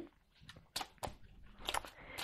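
Tarot cards being shuffled by hand: a series of short, faint slaps and rustles as packets of cards are split and dropped together.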